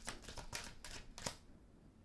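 A deck of tarot cards being shuffled by hand: a quick, irregular run of crisp card snaps and flutters that stops about a second and a half in.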